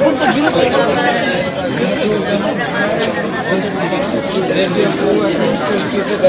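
Crowd chatter: many people talking at once close by, their voices overlapping so that no single speaker stands out.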